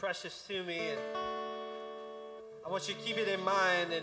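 Acoustic guitar chord strummed and left ringing, fading slowly for about two seconds, with a man's voice over the guitar before and after.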